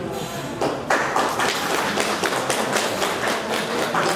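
An audience clapping, starting about a second in and keeping up a dense, irregular patter.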